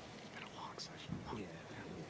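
Faint, indistinct speech over a low hiss.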